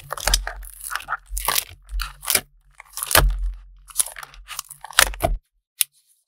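Clear plastic sticker-book sleeves and sticker sheets crinkling and rustling as they are handled, in a run of short, irregular crackly bursts. The crinkling stops shortly before the end, and one sharp click follows.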